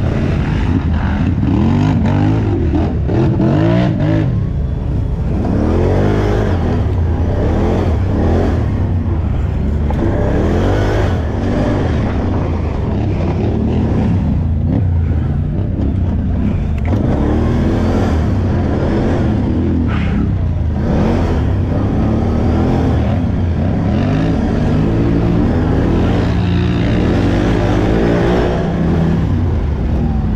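Utility ATV engine revving hard under race throttle, its pitch climbing and dropping every second or two as the rider gets on and off the gas over rough trail. Other quads' engines are mixed in nearby.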